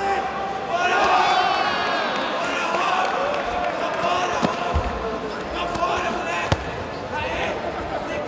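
Several voices calling out across a large sports hall during a grappling match, with two sharp thuds about halfway through, a couple of seconds apart.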